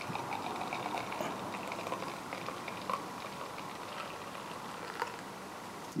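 Dark Belgian strong ale poured from a bottle into a tilted glass: a soft splashing pour with a fine crackle of the foam head forming, easing off after about three seconds.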